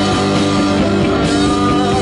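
Live rock band playing loudly: electric guitars with held notes over bass guitar and drum kit.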